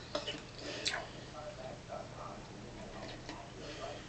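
Soft sipping of green tea from a metal spoon, with a few faint clicks of the spoon against a ceramic mug.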